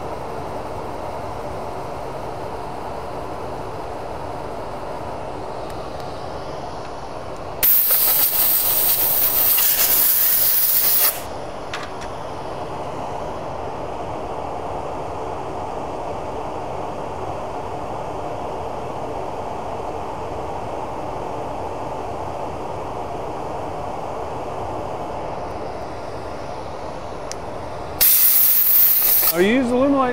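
Compressed air blowing from an air blow gun in two loud hissing blasts, the first lasting about three and a half seconds just before the middle and the second near the end. A steady machine hum sounds underneath throughout.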